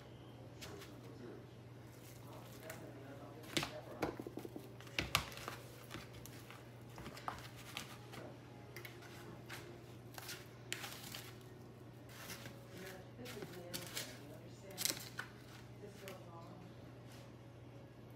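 Hands breading cube steak in plastic dishes: light scattered taps, crinkles and clicks as the meat is pressed into egg wash and breadcrumbs. A few louder knocks come against the containers, the loudest about five seconds in, over a steady low hum.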